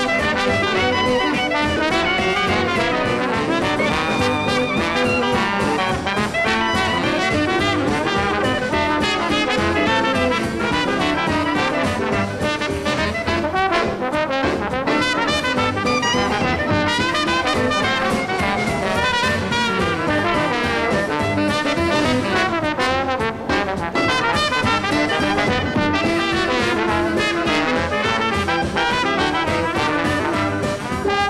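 Dixieland jazz band playing up-tempo, with clarinet and horns blending over a two-beat rhythm section.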